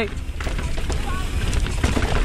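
Wind buffeting the microphone over the rumble of a downhill mountain bike's tyres on a rough dirt trail, with short rattling clicks from the bike.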